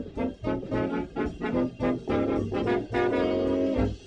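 A jazz orchestra's horn section plays short, punchy ensemble phrases over a rhythm section. About three seconds in it holds one long chord, which cuts off sharply at the end.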